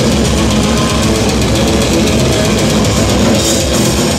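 Death metal band playing live at full volume: distorted electric guitars and bass over fast, dense drumming, loud and unbroken throughout.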